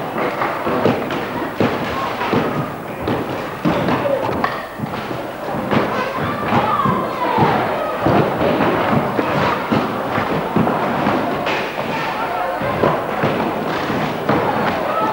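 Many wooden boards and planks knocking and clattering together as a crowd pulls them up from a sports-hall floor and carries them, a dense run of irregular thuds, with voices underneath.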